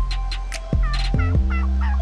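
Wild turkey gobbling: a quick rattling run of short notes starting about a second in, over percussive background music.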